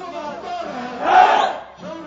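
Crowd of demonstrators chanting a slogan in unison, with one loud, drawn-out shouted phrase about a second in.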